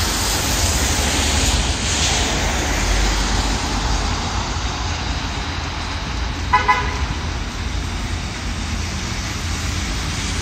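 Street traffic on a wet, slushy road: a steady wash of tyre noise with a low engine rumble. About six and a half seconds in, a vehicle horn gives two quick toots.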